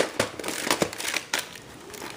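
Plastic VHS cases being handled: a string of sharp plastic clicks and crinkles as a clamshell case is picked up and turned over.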